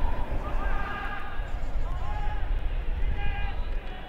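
Footballers shouting to each other on the pitch: several short, wordless calls and cries, over a steady low rumble.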